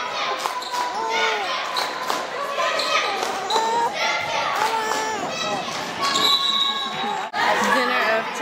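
A basketball bouncing on a wooden gym court among many children's voices, echoing in the large hall. The sound breaks off briefly near the end.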